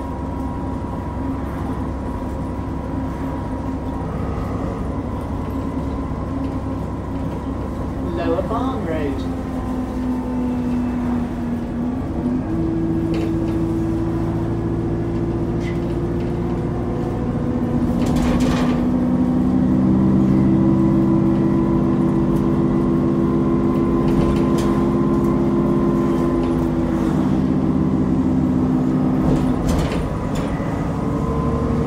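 Interior of an Alexander Dennis Enviro400 double-decker bus on the move: a steady diesel engine and drivetrain drone, with a brief gliding whine about eight seconds in. The engine note steps up about twelve seconds in as the bus pulls harder and is loudest around twenty seconds. A single sharp knock comes a little before that.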